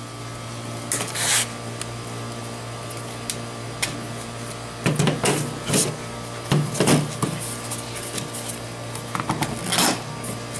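Hard plastic parts of a Hot Wheels Ballistiks Super 6-Shooter toy launcher being handled and snapped together, giving short clicks and clatters every second or two, over a steady low hum.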